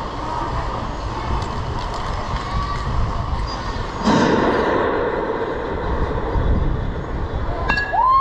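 Steady low outdoor rumble with background noise from a youth baseball game, swelling briefly about halfway through; just before the end a sharp crack of the bat hitting the pitch, followed by shouting.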